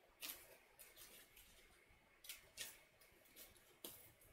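Scissors snipping through a paper printout, cutting slits in a zoetrope template: about seven short, faint snips, unevenly spaced.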